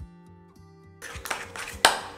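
Metal spoon scraping and clinking against a glass bowl while stirring thick icing, starting about halfway through with a sharp clink near the end. Soft background guitar music plays underneath.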